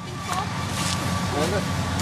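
An engine running steadily as a low hum, with faint voices over it.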